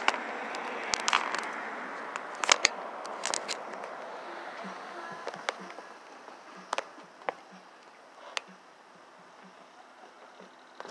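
Handling noise from a phone camera being swung and steadied: irregular sharp clicks and taps over a steady background noise that slowly fades away.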